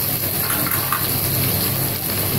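Tomatoes and onions sizzling in hot oil in a steel pressure pan, a steady hiss.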